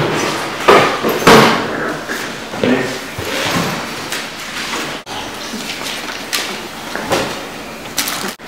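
A few sharp knocks and thuds in a room in the first seconds, then quieter room noise.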